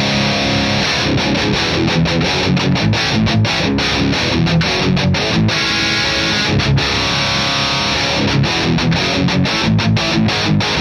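High-gain distorted electric guitar riff from a Mayones Duvell six-string played through a Matthews Effects Architect boost into a Revv Generator 100P amp: tight, muted chugs cut off sharply between them, with a few held notes along the way. With the boost in front, the player hears it add little to an already tight amp and, if anything, make it sound a little looser.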